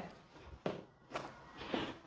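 A few faint footsteps and shoe scuffs of sneakers on a rubber gym floor as a person shifts stance.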